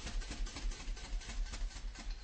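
Live rock music with rapid, evenly repeating drum and cymbal hits over a heavy low bass rumble.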